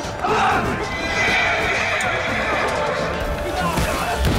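Battle-scene soundtrack: a horse whinnying amid soldiers' yelling, over an orchestral score.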